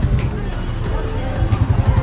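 Busy market-street bustle: background voices and traffic noise over a heavy, uneven low rumble.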